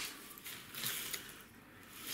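Soft rustling of a nylon monofilament fishing net and its plastic floats being handled and turned over, with a couple of faint swells about half a second and a second in, then dying down.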